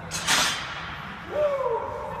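A short burst of rushing noise, then about a second and a half in a brief voice sound that rises and then falls in pitch.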